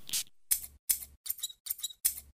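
Scissors snipping in a quick, even series of short cuts, about three a second, some with a faint metallic ring: a haircut sound effect.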